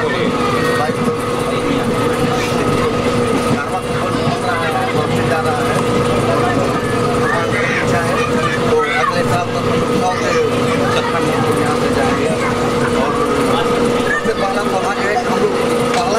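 Passenger train running, heard from inside a crowded coach: a steady rumble with a constant hum, under people talking.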